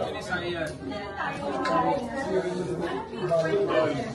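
Several people talking at once: indistinct, overlapping conversation of a small group.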